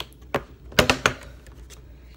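Plastic croissant packaging being handled: a handful of sharp clicks and crackles, the loudest just under a second in.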